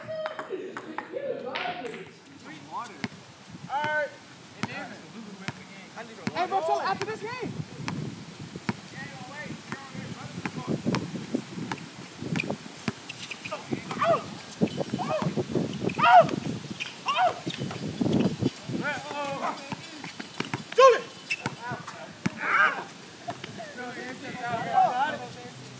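A table tennis ball clicking sharply off paddles and table in a quick rally for the first couple of seconds. After that come indistinct voices calling out, with scattered short knocks.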